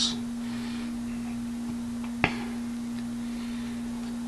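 A steady low hum on a single tone, with one sharp click a little after two seconds in.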